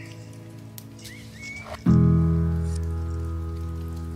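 Lo-fi hip hop music: soft sustained chords, then a louder chord with a deep bass comes in sharply about two seconds in and slowly fades. A light crackle runs underneath.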